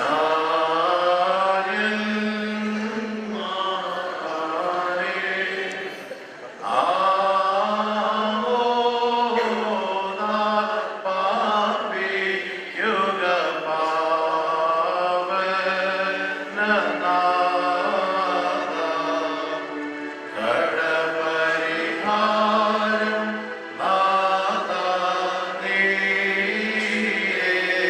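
Slow chanted singing: long held, gently wavering notes in phrases a few seconds long over a steady low tone.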